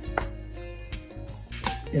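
Two light clinks, the second one ringing briefly: a metal spoon knocking against the mixing bowl, over steady background music.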